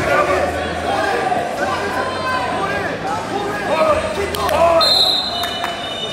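Voices shouting and calling out across a large echoing gymnasium during a wrestling bout, with a few thumps. A steady high tone sounds for about a second near the end.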